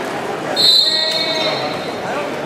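Referee's whistle, one short high blast about half a second in, starting the wrestlers from the referee's position. Crowd chatter in a large gym carries on underneath.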